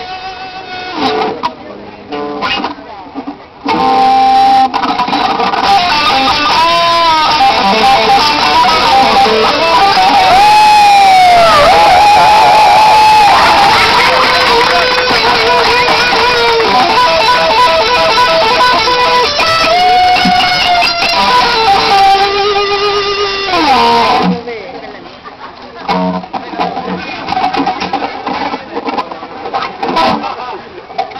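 Solo electric guitar played through an amplifier: a few quiet notes, then about four seconds in a loud lead line with bent notes and long held notes, which ends in a downward slide a little after twenty seconds in; quieter playing follows.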